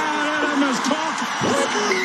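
A rugby match commentator's voice calling play over a steady background of stadium crowd noise.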